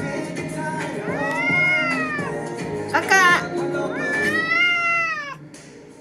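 A ginger Korean shorthair cat meowing twice, each a long meow that rises and then falls in pitch, with a short rapid chirp between them. Background pop music runs underneath and drops away near the end.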